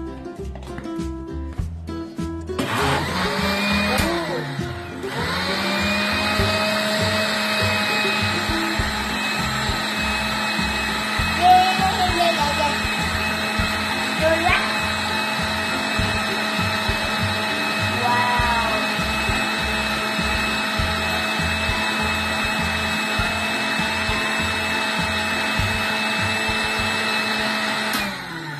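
A Panasonic countertop blender's motor blending passion-fruit juice. It starts about two and a half seconds in, falters briefly, then runs steadily with a constant high whine.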